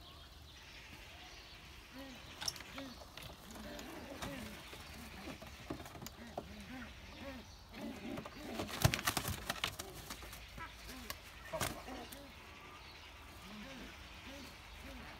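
Domestic pigeons cooing over and over, low arching coos, while a pigeon is caught by hand inside a small wooden coop. About nine seconds in there is a brief flurry of flapping and knocking as the lively bird is grabbed.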